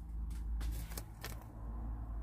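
Quiet room tone: a low steady hum with a few faint, soft ticks or rustles scattered through it.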